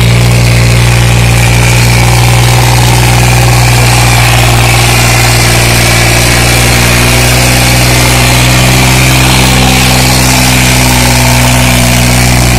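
New Holland 3630 tractor's three-cylinder diesel engine running loud and steady while pulling two harrows.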